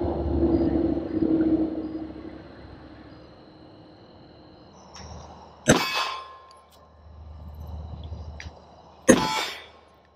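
Two handgun shots about three and a half seconds apart, each a sharp report followed by a short ringing decay. A low steady hum fades away over the first two seconds.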